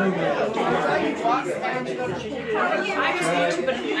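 Several people talking over one another at once, a roomful of lively chatter with no single voice standing out.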